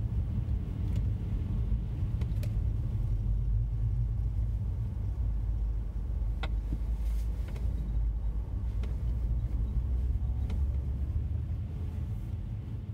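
Car driving slowly on snow-covered road, heard from inside the cabin: a steady low rumble of engine and tyres, with a few faint scattered clicks and knocks.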